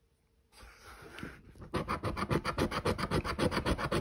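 A round scraper rubbing the latex coating off a Blazing Hot 7s scratch-off lottery ticket. The scraping comes in quick short strokes, about five or six a second, starting a little before halfway after a brief softer rustle.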